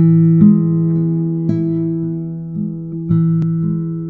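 Background music: a guitar playing slow plucked notes and chords that ring on and fade, a new one about every second.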